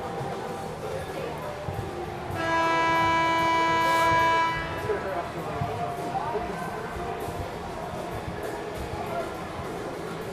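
Ice rink scoreboard horn sounding one loud, steady note for about two seconds, starting a couple of seconds in, over rink background noise and voices.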